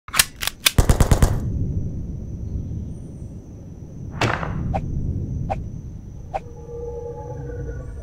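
Intro sound effects: a rapid burst of machine-gun-like fire in the first second, then four single sharp shots, each a little further apart than the last, over a low rumble. A few held tones come in near the end.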